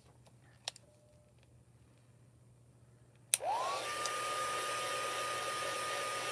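Near silence, then about three seconds in a craft heat tool is switched on: a rush of hot air with a fan whine that rises quickly to a steady pitch and holds. It is drying freshly stamped ink on coated paper.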